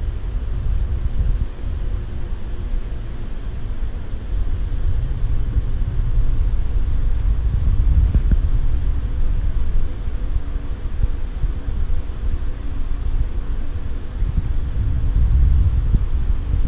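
Steady low rumble with a faint hum from aquarium pumps and circulating water, swelling and easing slightly in loudness.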